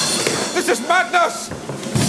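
Thrown daggers striking the spinning wheel of death with several sharp thuds, and a high-pitched cry of alarm about a second in.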